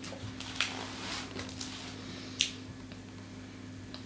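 Close-up eating sounds of people chewing crumbly kahk cookies: soft wet chewing with two sharp clicks, one about half a second in and one about two and a half seconds in, over a faint steady hum.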